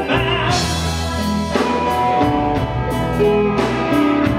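Live blues band playing, with electric guitar and drum kit under held lead notes.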